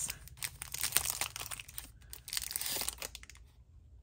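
Thin clear plastic wrapper crinkling and crackling as it is pulled off a small cardboard box of paper tickets, with paper handling mixed in. The crackling thins out and goes quiet near the end.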